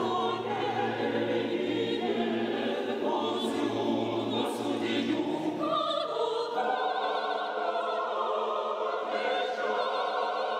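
Mixed choir singing unaccompanied Orthodox liturgical music in a cathedral. The low bass voices drop out a little past halfway, leaving the higher voices to carry on.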